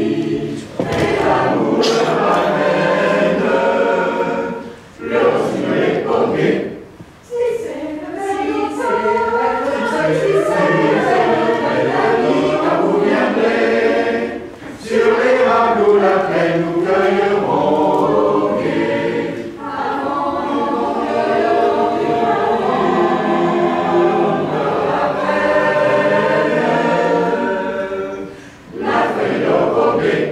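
Mixed choir of men's and women's voices singing a cappella in several harmonised parts, phrases held and moving, with brief breaks for breath between phrases.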